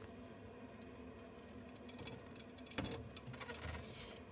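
Faint steady background, then about three seconds in a sharp knock followed by about a second of rustling and clicking: handling noise from a camera held by someone shifting inside a closet.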